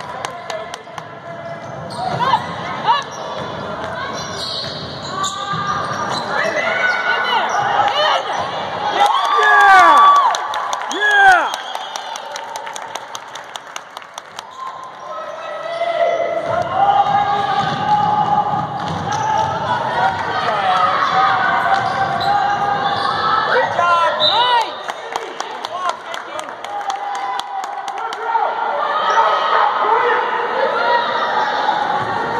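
A basketball being dribbled on a hardwood gym floor, with sneakers squeaking sharply as players cut and stop, and spectators' voices under it. The squeaks are loudest about ten seconds in.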